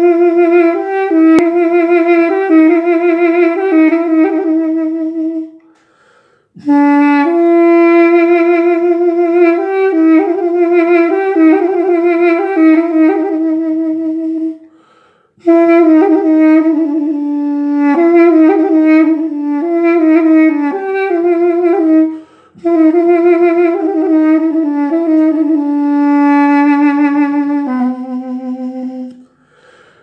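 Armenian duduk in C made by Hayk Galstyan, playing a slow solo melody in four phrases with short breaks for breath between them. The notes waver with vibrato and carry quick ornaments, and the last phrase drops to a lower held note.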